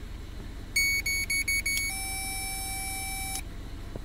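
An electronic beeper sounds about six quick high beeps in a row, then holds one steady high tone for about a second and a half before cutting off.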